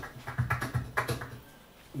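Soft light clicks of fingers on the strings and fretboard of a nylon-string flamenco guitar, about five in the first second and a half, over the fading ring of its low strings. It falls quiet near the end.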